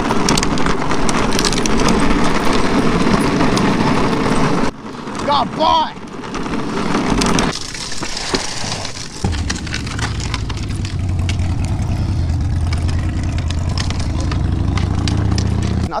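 Rolling rattle and rumble from a Razor drift trike's wheels on pavement as a husky pulls it along. The noise drops for a moment about five seconds in, then settles to a lower, steadier rumble after about nine seconds.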